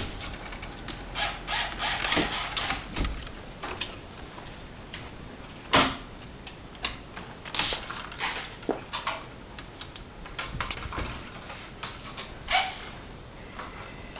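Irregular clicks, taps and rustles from hands working electrical cable at a stud-wall junction box, with one louder sharp knock about six seconds in.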